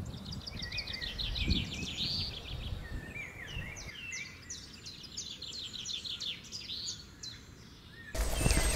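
Small songbirds singing in quick, unbroken runs of short high chirps and trills.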